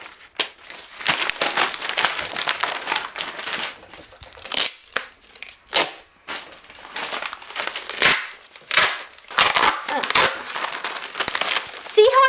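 Glossy magazine paper being ripped and crumpled: an irregular run of tearing and crinkling sounds.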